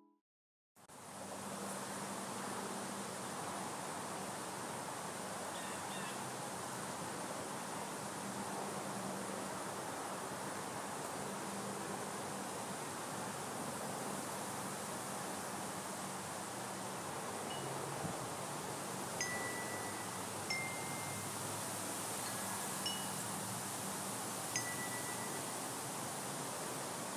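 Outdoor ambience: a steady hiss, with a few faint, high wind chime tones ringing briefly in the last third.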